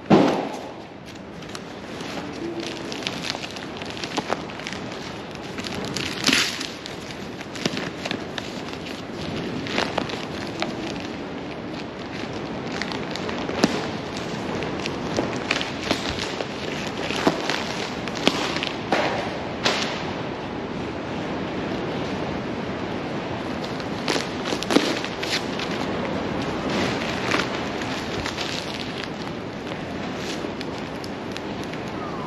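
Newspaper wrapping being torn, crumpled and pulled off by hand: a steady rustle broken by frequent sharp crackles and tears. There is a sharp thump right at the start.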